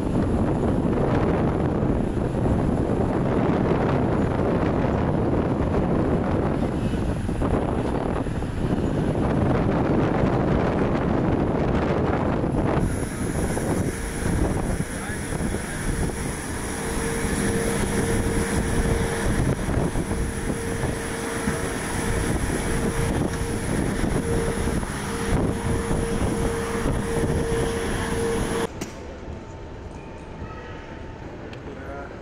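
Airport apron noise from parked jet airliners: a steady engine rumble with a thin high whine, and wind on the microphone. From about halfway a steady mid-pitched tone comes and goes. It cuts to the quieter hum of a terminal hall near the end.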